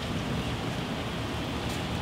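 Steady rain falling, an even hiss with a faint drop tick near the end.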